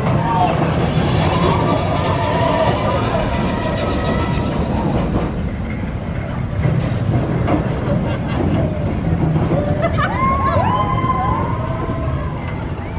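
Big Thunder Mountain Railroad mine-train roller coaster rumbling and clattering along its track, with riders shouting as it passes.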